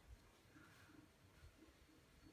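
Near silence: quiet room tone with faint handling of a cloth dust bag as a wallet is drawn out of it.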